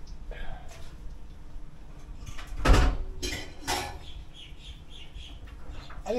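Kitchen handling sounds from a spice bottle and a glass mixing bowl on a tiled counter while paprika is added to seasoned flour: one loud knock about two and a half seconds in, then two shorter scraping noises.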